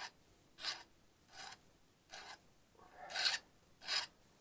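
Hand file rasping in short, even strokes, about six in four seconds, across the cut edges of sheet-metal soft jaws on a four-jaw lathe chuck, deburring the sharp edges left by the shears.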